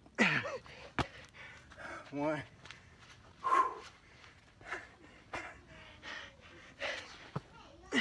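A man breathing hard and grunting through burpees, with short voiced exhales that drop in pitch near the start and the end, and a sharp knock about a second in.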